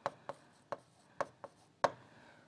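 A pen or stylus tip tapping and sliding on a tablet screen while letters are handwritten: about six short, sharp, irregular taps, the last one the loudest.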